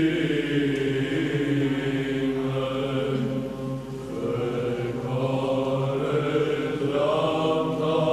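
Orthodox liturgical chant sung by a church choir in slow sustained phrases over a steady low held note, with a brief softening about halfway through.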